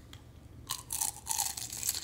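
A bite into a crispy shrimp spring roll: a run of crackling crunches from the shell as it is bitten, starting under a second in and going on to the end.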